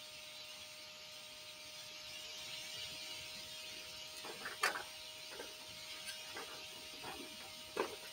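Paper pamphlet pages being handled and unfolded: a few faint, short crinkles and clicks from about four seconds in, over a quiet steady high hiss.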